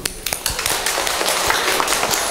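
Audience applauding: a dense, irregular patter of many hands clapping.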